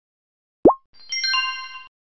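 Slide-presentation interface sound effects for a button click that reveals new content: a short pop that sweeps upward in pitch, then about half a second later a bright chime of several bell-like tones that cuts off suddenly.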